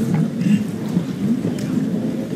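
Steady low rumbling noise with a few faint clicks.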